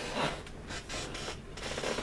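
Soft rustling and light scraping from a person shifting about and handling things close to the microphone.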